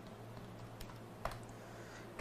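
A few faint, short clicks over a low steady hum.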